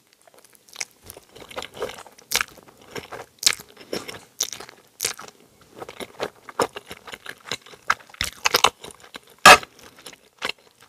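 Close-miked chewing of a mouthful of cheese ramen noodles: irregular wet mouth smacks and clicks, with one louder smack near the end.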